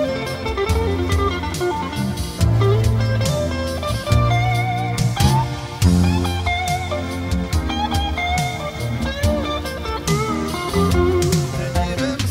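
A live rock band plays an instrumental break: a lead melody with bending, gliding notes over a steady bass line and drums.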